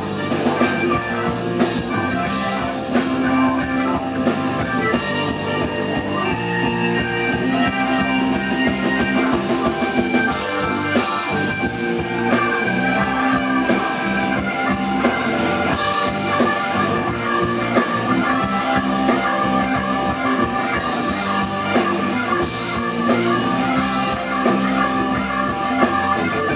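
A live band playing without vocals: Stratocaster-style electric guitar over a drum kit and bass guitar, loud and steady throughout.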